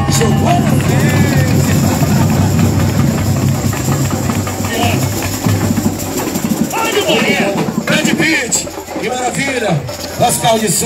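Samba school drum section playing a dense, loud groove led by low drums. Voices come in over it from about seven seconds in.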